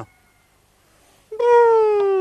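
A single long high-pitched cry, held for about a second with its pitch sinking slightly, after a second of near silence.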